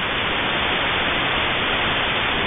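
Steady hiss of analogue television static.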